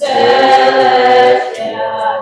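Small choir of young women singing a hymn together, coming in loud on a held chord at the start and easing off about a second and a half in.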